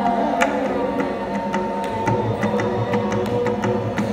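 Carnatic music: a violin holds a melody line over sharp mridangam strokes. Deeper bass drum strokes join from about halfway through.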